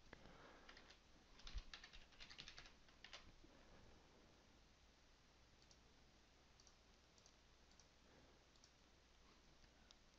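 Faint computer keyboard typing for the first three seconds or so, then near silence with a few scattered faint clicks.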